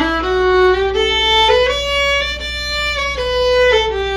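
Violin playing a one-octave D major scale exercise in a slurred dotted-quarter-and-eighth rhythm. It steps up note by note to the top D about two seconds in, then starts back down near the end.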